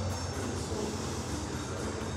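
A steady low rumbling noise with no distinct knocks or impacts.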